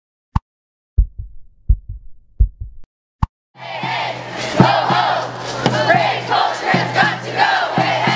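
A few low thumps, mostly in pairs like a heartbeat, with silence between. Then, from about three and a half seconds in, a crowd of street marchers shouting together, many voices overlapping.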